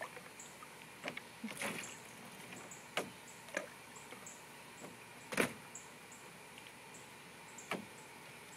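A small plastic cup dipping and splashing in a shallow tub of water, with scattered knocks of the cup against the plastic; the loudest knock comes about halfway through.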